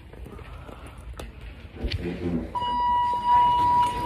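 A steady electronic beep tone starts about two and a half seconds in and holds unbroken. Before it come a few sharp clicks of the phone being handled and a brief voice.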